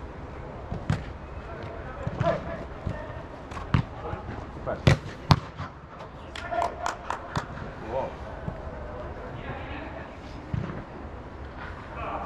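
A football being kicked and thudding on artificial turf inside an air-supported dome: several sharp, separate strikes, the loudest about five seconds in, then a quick run of about six taps in a second, with players shouting in the background.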